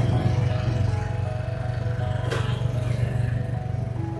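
Motor scooter engine running steadily as the loaded scooter pulls away, with a brief knock a little past two seconds in, under background music.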